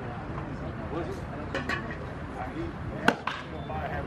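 A pitched baseball pops into the catcher's leather mitt with one sharp crack about three seconds in, followed by a fainter click, over background chatter at the ballfield.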